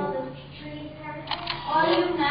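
Low voices talking, broken by two quick sharp clicks close together about one and a half seconds in.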